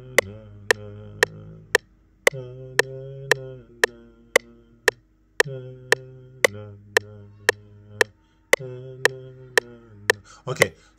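A steady knocking click on every beat, about two a second, from FL Studio 20 playing at 115 BPM, serving as the timing guide. Over it a man hums a melody in four long phrases, trying out the tune he will play on the keyboard.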